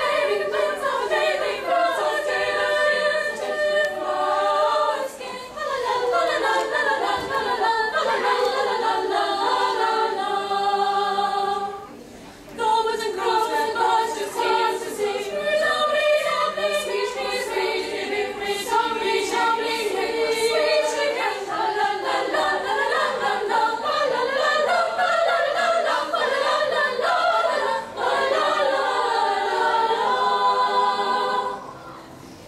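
Teenage girls' choir singing in parts, with a short break in the singing about twelve seconds in.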